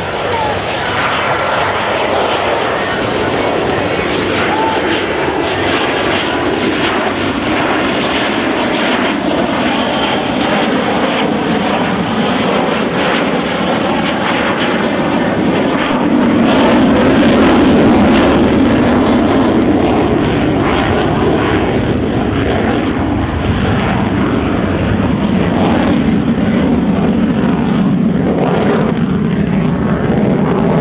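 USAF F-16 Fighting Falcon's General Electric F110 turbofan roaring through a display pass. The roar builds to its loudest about sixteen to eighteen seconds in as the jet passes close, then holds loud as it pulls away.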